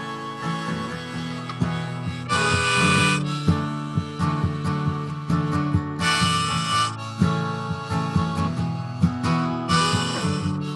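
Acoustic guitar strummed in a steady rhythm, with a harmonica held in a neck rack playing long chords over it about every three to four seconds: the instrumental introduction to a folk song, before the singing comes in.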